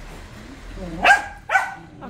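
Dog barking twice, about a second in and again half a second later, each bark sharp and dropping in pitch.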